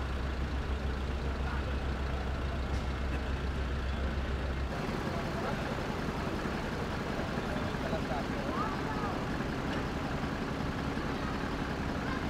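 Fire engine's diesel engine idling with a steady low hum, which stops about five seconds in. Steady street noise with faint voices runs on afterwards.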